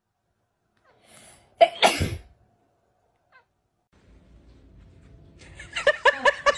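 A cat sneezing twice in quick succession, short sharp bursts about a second and a half in.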